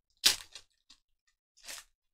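Foil wrapper of a Panini Chronicles UFC trading-card pack crinkling as it is torn open by hand: a sharp crackle about a quarter second in and a softer one near the end.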